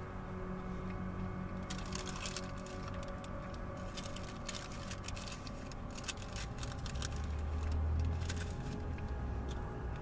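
A person chewing food close to the microphone, a run of wet clicks and smacks. A low rumble swells about seven seconds in and fades by nine.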